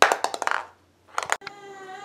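A quick cluster of clattering clicks, then a brief hush and a few more clicks. After a sudden cut, a steady hum with several pitches.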